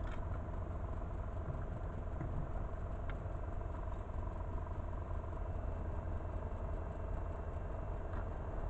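Steady electrical hum and whine in a light aircraft's cockpit from the electric fuel boost pump and avionics, with the engine not yet started. A small tick comes about three seconds in.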